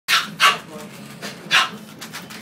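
Dog barking three times: two short barks close together, then another about a second later.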